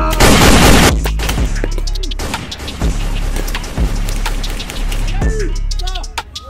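Paintball markers firing in repeated sharp pops and short volleys, loudest in a dense burst just after the start, over background music.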